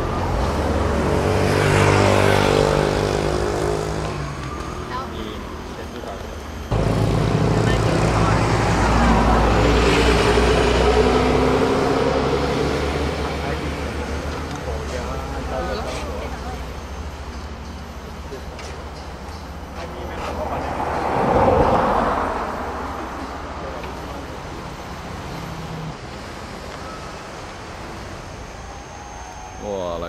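Road traffic: cars passing close by, each swelling in and fading away, with passes about 2, 10 and 21 seconds in, over a steady low rumble.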